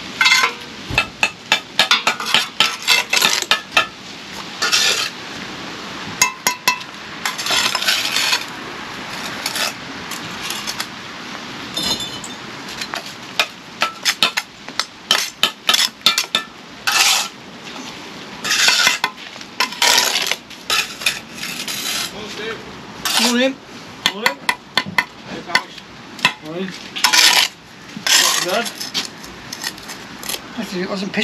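Steel bricklaying trowel working mortar on concrete blocks: repeated short scrapes and metallic clinks as mortar is spread, cut off and blocks are tapped down, at an irregular pace.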